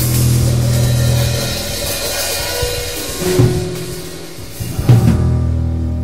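Free improvised jazz: upright bass holding long low notes under a drum kit with a running cymbal wash, with two louder drum hits about three and five seconds in.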